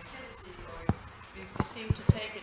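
Three dull thumps, one about a second in and two close together near the end, over faint speech in the room.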